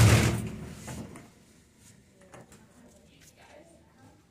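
Otis elevator doors sliding shut: a loud rush of door noise in the first second that fades to a faint background with a few light clicks.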